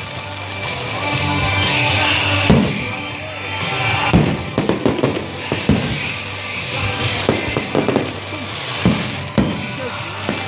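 Aerial fireworks going off over steady music: a string of bangs and crackles, with a big bang about two and a half seconds in and a quick cluster of cracks from about four to six seconds.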